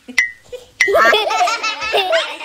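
High-pitched cartoon character voices laughing in quick bursts, starting about a second in, after two short clicks.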